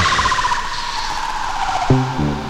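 Comic film sound effect: a held, high screeching tone that slowly slides down in pitch and breaks off with a click near the end.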